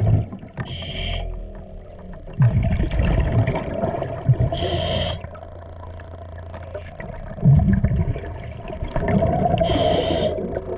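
A diver's regulator breathing underwater. A sharp hiss comes about every four and a half seconds, three times, each followed by a rumbling gush of exhaled bubbles, over a steady hum.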